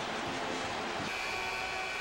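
Large arena basketball crowd roaring steadily during a timeout, with a faint steady high tone coming in about halfway through.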